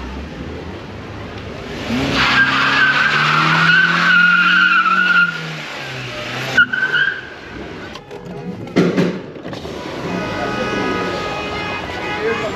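A car engine revs while its tyres squeal for about three seconds, then gives a short second squeal a little later.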